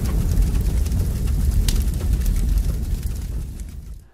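A deep rumbling intro sound effect, the tail of a boom, dying away gradually toward the end, with a few faint crackles.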